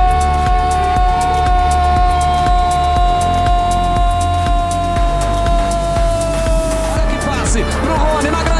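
A football commentator's long drawn-out shout of "goal", one held note sinking slightly in pitch and breaking off about seven seconds in, over background music with a steady bass beat.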